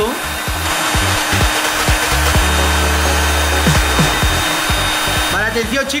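Heat gun blowing hot air steadily onto hard candies to melt them, a loud even rush of air over a faint motor hum, cutting off near the end. Background music with a bass line plays underneath.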